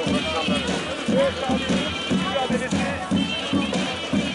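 Davul and zurna playing a steady beat, about three drum strokes a second, with a shrill reedy melody over it: the traditional music that accompanies Turkish oil wrestling.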